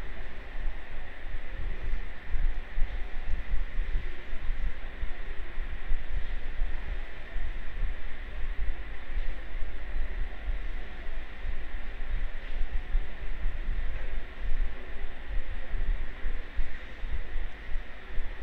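Steady background noise on an open microphone: a fluctuating low rumble under a constant hiss, with a faint steady high whine.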